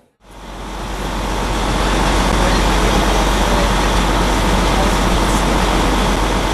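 Steady city street traffic noise with a low engine rumble, fading in over the first second or two.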